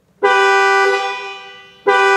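Mahindra Thar's dual-pitch horn sounded from the steering-wheel pad, two steady tones together. The first blast starts about a quarter second in and fades away over about a second, and a second blast starts just before the end.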